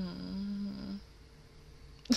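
A woman's closed-mouth hum, a held "mmm" that dips slightly in pitch and stops about a second in.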